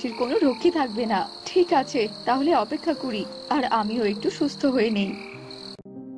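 Frogs croaking in rapid, overlapping calls over a steady high cricket trill. Both cut off suddenly near the end, where soft music begins.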